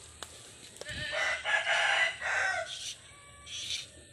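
A rooster crowing once, a single call of about a second and a half, followed near the end by a shorter, fainter, higher call.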